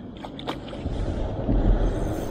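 Low buffeting rumble on the microphone that builds from about a second in, with a single click just before it.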